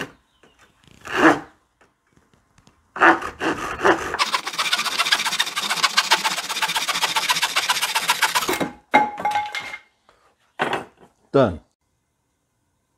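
Folding camping saw cutting through a 1x2 wooden board: steady back-and-forth sawing for about five and a half seconds, starting about three seconds in, followed by a few short knocks of wood as the cut piece comes free.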